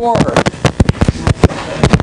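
A rapid, irregular series of sharp clicks and pops, several a second.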